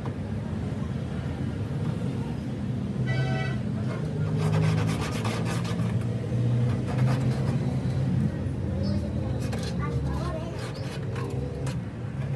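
Light metal clicks and taps as a tool works a rusted steel door sill, over a steady low engine-like rumble, with a short horn-like tone about three seconds in.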